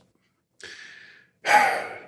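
A man breathing audibly in a pause in his speech: a soft breath about half a second in, then a louder, sigh-like breath in the last half second.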